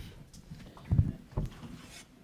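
Handling noise close to a table microphone: a few dull low thumps, the loudest about a second in, as someone puts down a handheld mic and gets up from the table.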